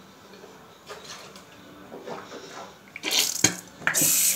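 Water splashing in a bathroom sink: faint at first, then louder splashing rushes near the end.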